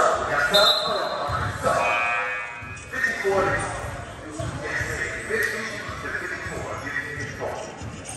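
Echoing ambience of a basketball game in a large gym: voices of players and spectators, a basketball bouncing on the hardwood floor, and two short high squeaks in the first three seconds.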